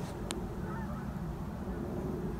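Steady low outdoor background noise, with one brief faint click about a third of a second in.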